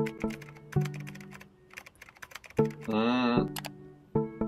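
Computer keyboard typing, a quick run of clicks, over slow piano music. Near the end a brief wavering tone sounds, followed by a couple more clicks.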